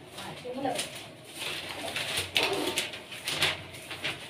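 A bird cooing low and briefly about half a second in, over quiet talk.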